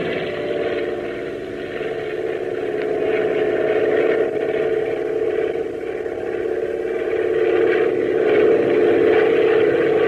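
Sound effect of a propeller aeroplane's engine droning steadily, growing a little louder toward the end, as played on an old radio-show transcription.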